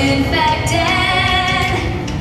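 A woman singing held, melodic notes over backing music.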